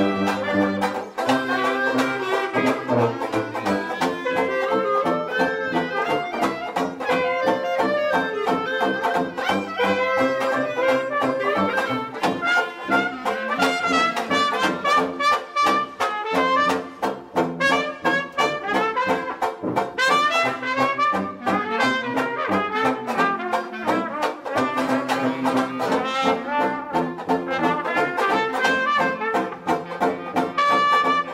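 Traditional jazz quartet of clarinet, trumpet, banjo and tuba playing an instrumental chorus in an up-tempo two-beat. The banjo strums a steady beat under the tuba's bass line, while the horns weave melody lines above.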